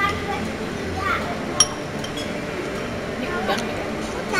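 Chopsticks clinking once, sharply, against a ceramic rice bowl about a second and a half in, over indistinct background voices.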